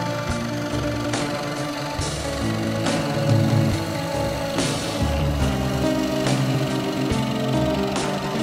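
Background music with a steady beat, a sharp stroke a little under once a second, over held chords that change every second or so.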